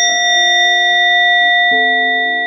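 A single stroke on a Buddhist prayer bell, ringing out with a clear, high tone and slowly fading. Soft keyboard music plays beneath, its notes changing near the end.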